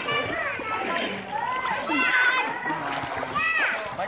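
Young children's high-pitched voices calling and chattering, with water splashing as small feet wade through a shallow pool.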